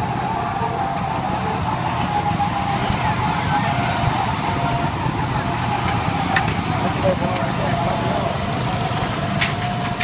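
A group of go-karts running together as they drive by, their engines making a steady high-pitched note that wavers slightly over a constant low rumble.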